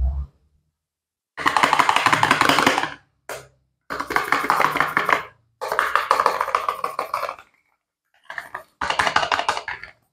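Clear plastic film on a cardboard soap box crinkling as gloved hands handle and peel it, in several bursts of about a second or two each, with a short thump at the very start.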